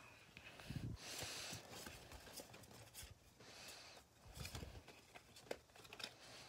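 Faint handling noise from a Pokémon booster pack and trading cards: a brief rustle about a second in and a few soft knocks and light clicks as the cards are handled.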